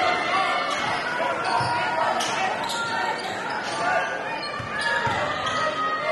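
Live game sound of a basketball bouncing on a hardwood gym court, with many short sneaker squeaks and crowd voices echoing in the hall.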